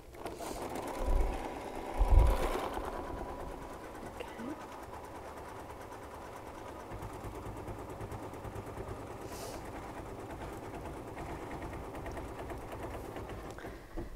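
Computerized embroidery machine stitching a centering crosshair into sticky stabilizer in the hoop: a steady, rapid run of needle strokes. Two low thumps come about one and two seconds in.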